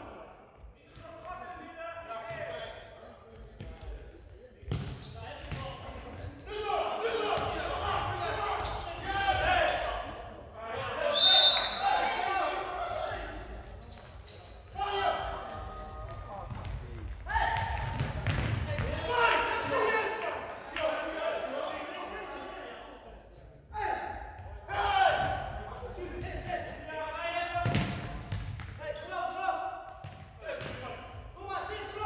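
Players' voices calling out across a large, echoing sports hall during a futsal match, with the ball thudding off feet and the hard court floor. The sharpest thud comes just before the end.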